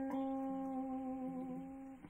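Guitar holding one long sustained note that slowly fades, with a softer lower note sounding underneath in the middle.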